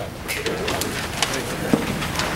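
A hall full of people settling after reciting the Pledge of Allegiance together: scattered knocks and clicks of chairs and shuffling feet, with low murmuring voices.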